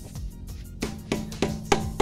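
Background music; a drum beat comes in a little before the middle, about three beats a second, over steady held tones.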